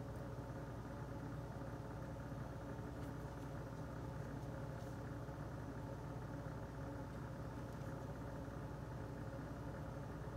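A faint, steady mechanical hum of a running motor, with a few faint light ticks.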